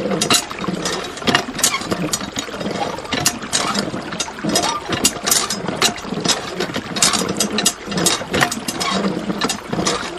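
Homemade miniature hand water pump worked by hand: a quick, irregular run of small plastic and metal clicks and knocks from the handle and plunger.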